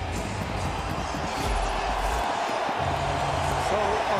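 Hockey arena crowd noise, a steady general din, with music playing whose low notes change every second or so.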